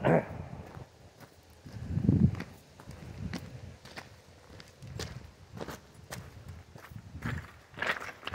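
Footsteps on gravel, a person walking at an unhurried pace with irregular steps. A throat clear comes at the start and a brief low rumble about two seconds in.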